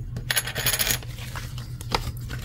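A scratch-off lottery ticket being scratched: a dense burst of quick scraping strokes about the first second, then lighter scrapes and a few ticks.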